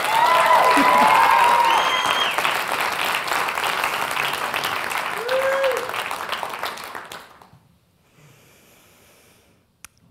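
Audience applauding, with a few cheers and whoops near the start and one more about five seconds in; the clapping fades out after about seven seconds.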